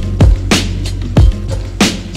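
Jazz boom bap hip hop instrumental at 93 BPM: a kick drum and a snare on the backbeat, the two snare hits about 1.3 s apart, over a sustained bass line.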